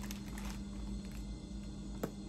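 Faint crinkling of clear plastic bags being handled: a few soft, short rustles over a steady low hum.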